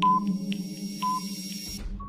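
Countdown timer sound effect: a short beep once a second with faint ticks between, over a steady droning synth music bed.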